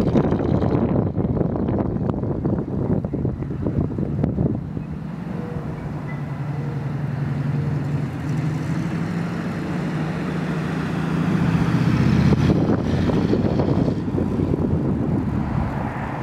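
1950 Ford Super Deluxe woodie's flathead V8 running as the car drives slowly around on grass. It is loud at first, eases off after about four seconds, swells again about twelve seconds in as the car comes close, then fades as it pulls away.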